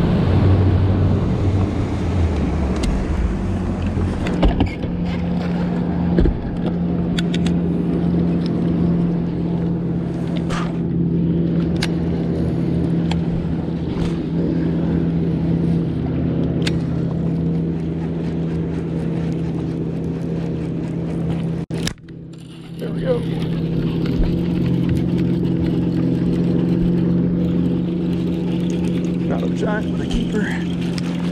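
A bass boat's motor running with a steady hum, water and wind noise over it, and a few light clicks. The sound drops away for about a second just before two-thirds of the way through, then the hum resumes.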